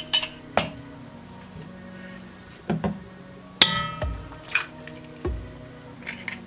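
Scattered clinks and taps of a metal spoon and kitchen glassware, with one louder ringing clink a little past halfway and a few dull thumps, over soft background music.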